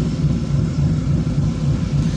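Small car's engine and road noise heard from inside the cabin: a steady low hum while the car drives slowly along the road.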